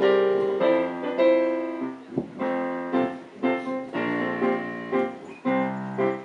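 Electronic keyboard set to a piano sound, playing chords, each struck and left to ring and fade before the next.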